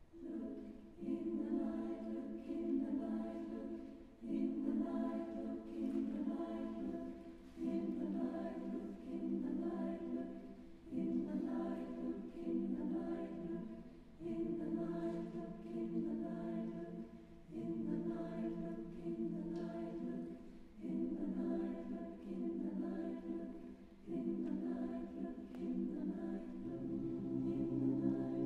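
Mixed choir singing a cappella in sustained chords, entering at the start. The choir repeats a phrase about every three and a half seconds, each one starting strongly and then fading.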